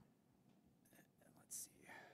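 Near silence: quiet hall room tone with faint murmured words and a short hiss about one and a half seconds in.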